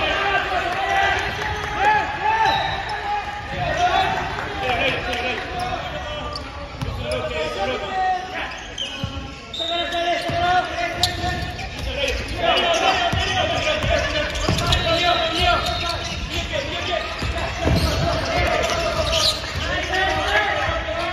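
A basketball bouncing on a hardwood gym court during live play, with players' and bench voices calling out.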